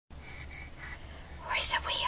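A person whispering briefly, breathy and hissy, starting about one and a half seconds in, over a faint steady low hum.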